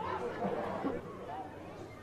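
Faint voices chattering in the background over low ambient noise.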